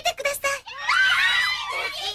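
A spoken line ends, and about two-thirds of a second in a crowd of high cartoon voices breaks into excited squealing, many overlapping at once and sliding up and down in pitch.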